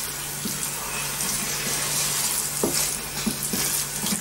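Fried rice sizzling in a wok: a steady frying hiss with a few light clicks of a wooden spoon stirring, over a low steady hum.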